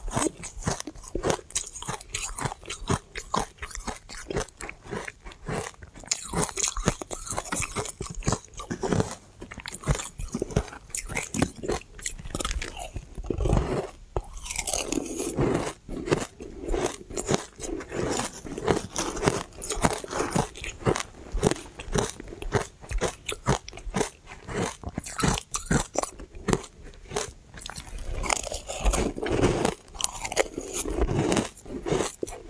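Close-miked crunching and chewing of refrozen shaved ice dusted with matcha powder and sesame seeds: dense, rapid crisp crunches as bites of the hard ice are broken up in the mouth, with brief let-ups between bites.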